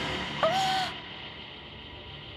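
A single short, eerie pitched call, rising quickly and then held for about half a second, with a sharp start about half a second in. After it, only a faint steady hiss remains.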